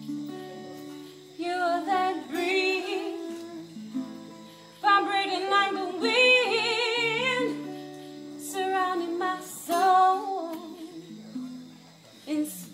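A woman singing long phrases with strong vibrato, live, over held accompaniment chords.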